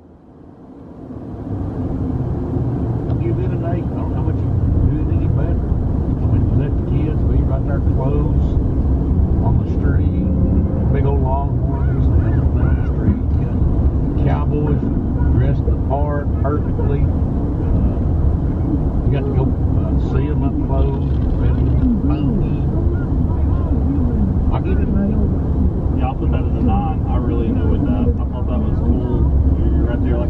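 Steady road and engine rumble inside a car's cabin at highway speed, fading in over the first two seconds, with low voices talking over it.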